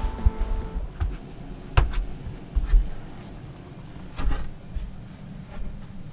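Handling noise from a hand-carried camera while walking: irregular low thumps of footsteps and movement, with a few sharp clicks. A held background-music tone stops about a second in.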